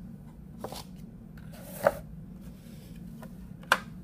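Plastic model-kit parts being handled and moved about on a tabletop: three light clicks and knocks, the loudest just before halfway with a short rustle before it, over a steady low hum.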